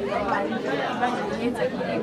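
A woman speaking into a bank of microphones, with background chatter in a large room.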